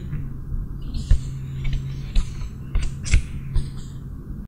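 White paperboard tuck box being opened by hand: the card scrapes and creaks, with several sharp clicks as the tucked flaps are pulled free. A low steady hum runs underneath.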